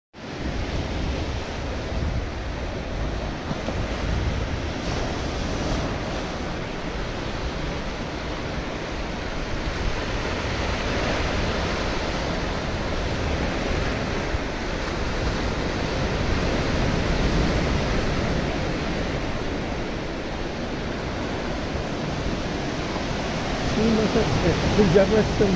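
Ocean surf breaking and washing steadily, with wind rumbling on the microphone.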